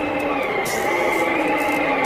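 Winter wind sound effect: a steady rushing noise with a whistling tone that wavers up and down, over a few faint sustained musical notes.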